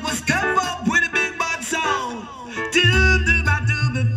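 Roots reggae song playing from a vinyl record, with singing and guitar; a deep bass line comes in near the end.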